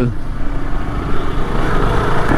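Wind noise on the microphone of a moving motorcycle, with the Yamaha R15's single-cylinder engine running underneath as it rides along.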